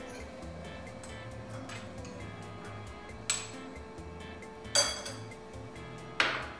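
Glass bowls clinking twice, once about three seconds in and again near five seconds, the second clink ringing briefly.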